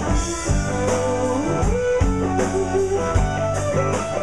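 Live blues-rock band playing an instrumental passage without vocals: electric guitars, bass, drums and a steel guitar, with a rising slide note about a second and a half in.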